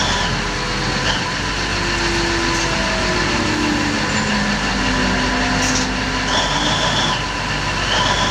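Diesel engine of a large mining haul truck running steadily as the truck drives slowly.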